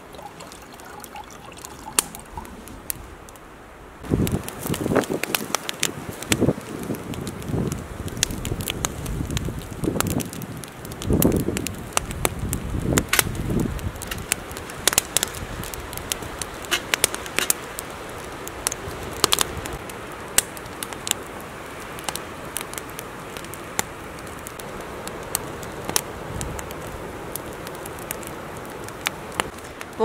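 Water trickling from a jerrycan tap into a metal camp kettle for the first few seconds, then a wood campfire crackling and popping. There are several dull knocks in the first half as the kettle is handled over the fire.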